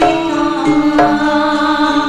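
Javanese gamelan music: struck bronze metallophone notes ringing and overlapping over sustained lower tones.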